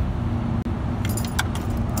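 Metal jewelry jingling and clinking inside a wooden jewelry box as the box is handled and opened, a cluster of clinks about a second in and another near the end, over the steady low rumble of a car cabin.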